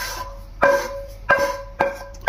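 Wooden spatula knocking and scraping against a frying pan and a stainless steel pot while sautéed onions are scraped into mashed potato. The knocks come at uneven intervals, and each rings with the same short metallic tone.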